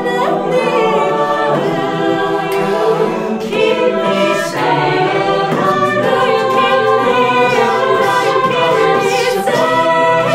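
A cappella vocal group singing in close harmony, with a female soloist leading over the sustained chords of the backing voices.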